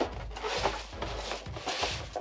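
Cardboard box flaps and plastic packaging rustling and rubbing as hands rummage inside a shipping box, in two brief rustly spells.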